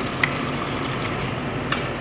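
Water pouring from a plastic bottle into a pot of hot chicken stew, a steady splashing fill, with two short clicks about a quarter second in and near the end.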